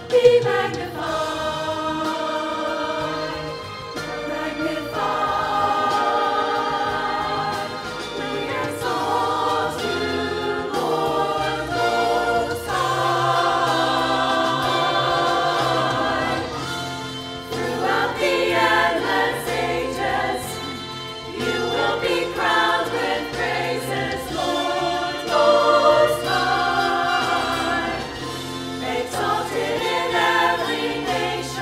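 Church choir singing an anthem together, sustained phrases with keyboard accompaniment underneath.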